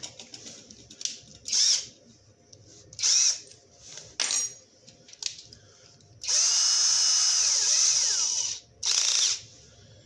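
Cordless drill-driver running unloaded in short trigger pulls: two brief whirs, a click, then a run of about two seconds that spins up, holds steady and winds down, and one more short whir near the end.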